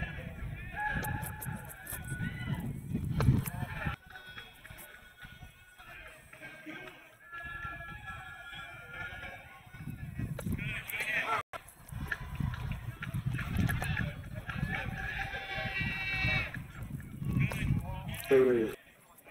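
Indistinct chatter and calls from spectators around the field, with some music mixed in.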